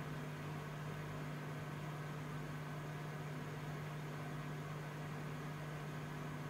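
A steady low hum over an even, faint hiss, unchanging throughout.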